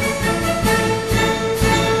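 Intro theme music: sustained chords with a heavy beat about twice a second.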